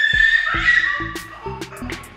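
A toddler's high-pitched scream, held for about a second, over background music with a steady beat.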